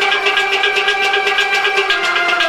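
Instrumental passage of Kashmiri Sufi music: a harmonium holds steady notes under fast, even plucking of a rabab.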